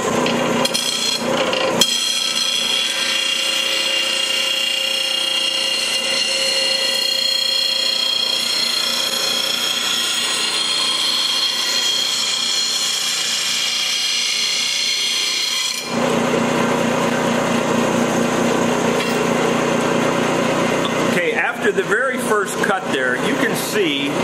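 JET bench grinder's fine-grit wheel grinding the steel edge of a lawn tractor mower blade, a steady high-pitched grinding sound. About two-thirds of the way through, the high grinding gives way to a lower, steady running tone, with a voice near the end.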